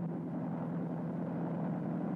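Steady drone of a low-flying aircraft's engines, with a constant low hum running under it.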